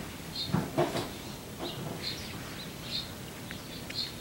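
A songbird outside gives short, high chirps every second or so. Early on, about half a second to a second in, there is a louder pair of low knocks.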